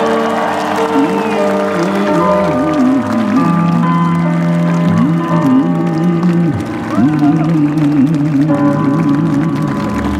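Male singer singing a slow song live, backed by a band whose held chords sit under the voice's wandering melody.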